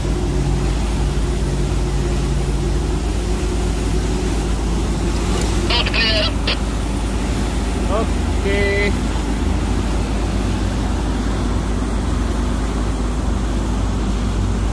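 Steady low rumble of a launch boat's engine and wash heard from high on a ship's deck as the boat pulls away from the hull, its engine note fading after about three seconds. Two short bursts of voices a little before the middle and again about two seconds later.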